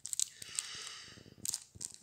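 Thin clear plastic bag around a stack of game cards crinkling as it is handled, with a few sharp crackles.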